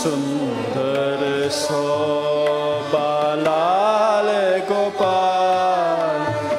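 Gurmat Sangeet kirtan in raag Bihagara: sung melody that glides and holds long notes, with bowed dilruba and taus following it over a tanpura drone. A few tabla strokes are heard.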